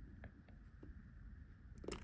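Near silence with a few faint small clicks: a fine metal tool pressing the stem release button on a Seiko NH35 automatic watch movement to free the crown stem.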